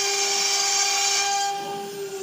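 CNC router spindle whining at one steady pitch as its bit cuts a wooden sheet, with a high cutting hiss that drops away about one and a half seconds in.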